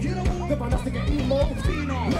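Live hip-hop band playing over a PA: drums and a steady bass line under a rapped vocal.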